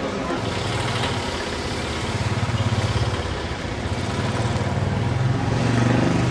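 A motor vehicle's engine running close by, a steady low hum with a slight pulse, setting in about half a second in.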